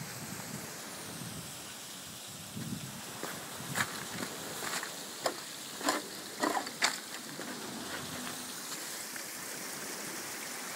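Footsteps crunching on loose stones and broken paving slabs: about half a dozen sharp steps between roughly four and seven seconds in, over a steady rushing background noise.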